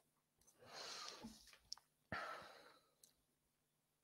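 Near silence with two faint breaths into a headset microphone, one about a second in and another about two seconds in, and a couple of small clicks.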